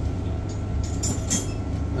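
Steady low hum of room background noise, with a few faint clicks or rustles about a second in.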